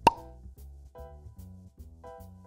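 A short, sharp pop sound effect right at the start, over quiet background music: soft pitched notes on a steady beat of about two a second.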